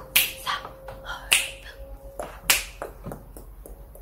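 Sharp finger snaps, the strongest about a second or so apart, over faint background music.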